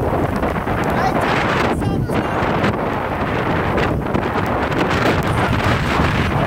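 Strong wind buffeting the microphone, a loud, steady wind noise with no break.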